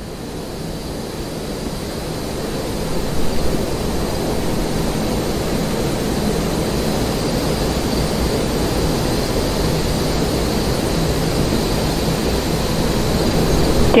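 Steady rushing hiss from the launch pad of a fuelled Falcon 9 rocket, with propellant vapour venting from the vehicle, rising slightly over the first few seconds and then holding level.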